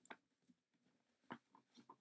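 Near silence, with a few faint short rustles and clicks from burlap ribbon being twisted and pushed into a black metal heart-shaped wire wreath frame; the clearest comes about a second in.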